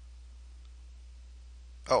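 Quiet room tone with a steady low hum, then a man's voice saying 'Oh' near the end.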